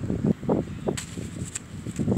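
Handling noise: rustling and bumping as a plush toy and a paper cutout are moved about right next to the microphone, with a couple of sharp clicks.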